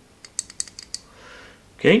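A quick run of about eight small, sharp metallic clicks within a second from a Colt Mustang's magazine release being worked in the bare pistol frame, then a soft rustle of handling; the newly fitted part works.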